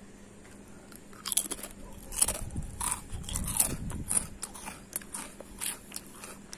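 A person chewing a crunchy snack close to the microphone: irregular crunches from about a second in until near the end.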